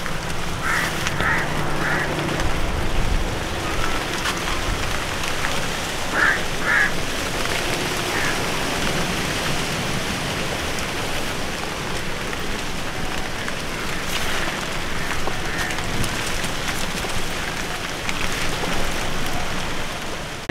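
Steady rain falling on trellis foliage and ground, a continuous even patter. A few short animal calls cut through it, a cluster about a second in and a pair about six seconds in.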